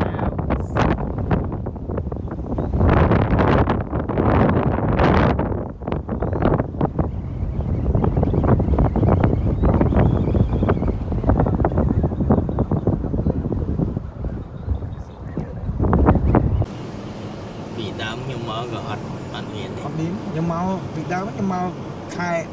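Heavy, gusty wind buffeting a phone microphone while moving fast along a road. About two-thirds of the way through it cuts off suddenly, giving way to a quieter vehicle rumble with voices over it.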